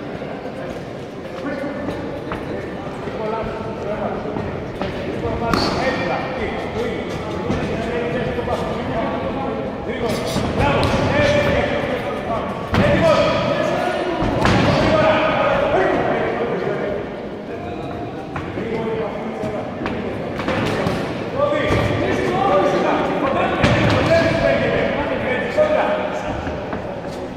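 Voices calling out in an echoing sports hall, with scattered sharp thuds of gloved punches and kicks landing during a kickboxing bout.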